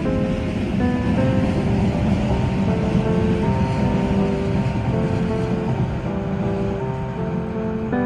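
Soft piano background music over a steady rushing rumble that eases off near the end, from an electric commuter train running along the elevated railway line.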